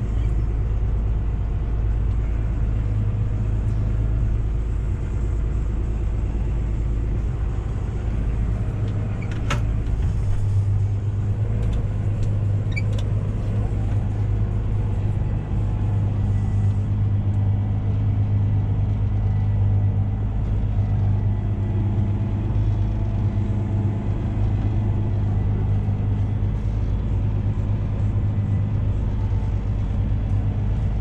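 Valtra tractor's diesel engine running steadily while packing a silage clamp, heard from inside the cab. Its note shifts about halfway through, and there is a single sharp click about nine and a half seconds in.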